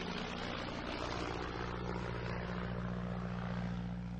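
Small single-engine propeller airplane in flight, its engine making a steady low drone over a rush of air.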